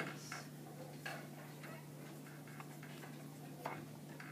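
Pen tip writing on an overhead-projector transparency: faint, irregular ticks and short scratches of handwriting, a little stronger about a second in and again near the end, over a steady low hum.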